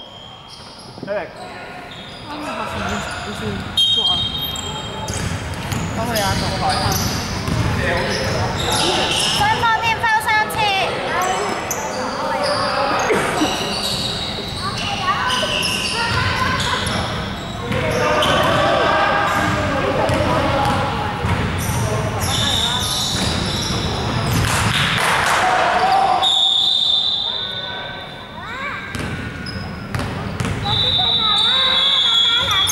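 A basketball bouncing on a hardwood gym floor among players' voices, all echoing in a large sports hall.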